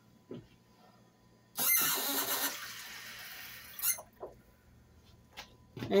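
A kitchen tap running for about two seconds, starting suddenly and fading out, among a few light knocks.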